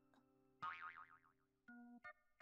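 A faint cartoon boing sound effect, a wobbling tone lasting about half a second, in an otherwise near-silent moment; a soft keyboard note of the next music cue comes in near the end.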